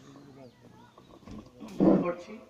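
Faint voices, then near the end a brief loud rough burst of noise through the meeting's microphone, just before a man starts speaking.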